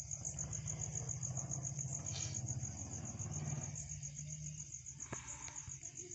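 Crickets chirping in a steady, evenly pulsing high trill. Under it runs a low hum that fades out about four and a half seconds in.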